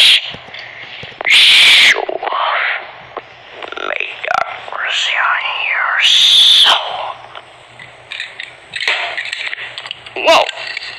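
A young person's voice making wordless vocal sound effects, with a run of rising-and-falling pitch glides in the middle and two loud, harsh bursts, one early and one about two thirds of the way through.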